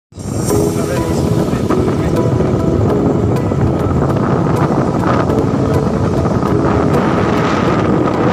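Motorcycle running steadily along a road, with heavy wind rushing over the microphone.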